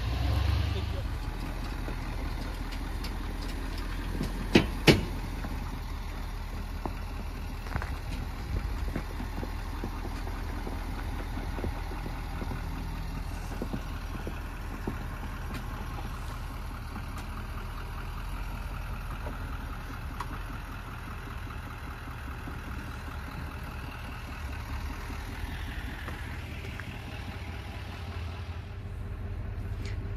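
A GMC Sierra 3500 HD's diesel engine running steadily at low speed while the truck tows a fifth-wheel trailer through a tight turn. Two sharp knocks come close together about five seconds in.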